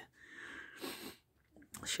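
A person's faint breath close to the microphone, about a second long.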